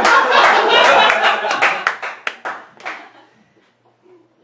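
Small audience clapping, mixed with laughter and voices at first; the applause thins to a few scattered claps and dies out about three seconds in.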